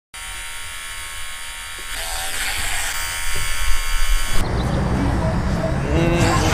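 Simulated electric hair-clipper buzz from an iPhone prank app, played through the phone's small speaker: a steady electric buzz that grows louder about two seconds in and stops abruptly about four and a half seconds in. A low rumble follows.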